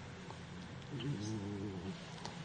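A pause with only faint hiss. About a second in, a man's voice gives a soft, drawn-out hesitation hum lasting about a second.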